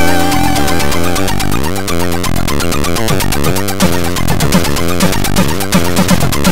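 Amiga-style AHX chiptune from Hively Tracker, with four synthesized channels of square and pulse-wave tones and a noise channel. The notes wobble with vibrato and swoop in fast pitch slides over a steady beat of noise-drum hits.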